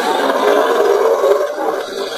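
A loud rushing swell of noise from a logo intro sound effect, fading away in the second half.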